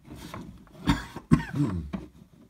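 A man coughing twice, about a second in, the two coughs about half a second apart.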